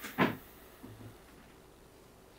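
Tarot cards handled in the hands: one short, loud papery slap or shuffle of the deck just after the start, then a couple of faint soft card sounds about a second in.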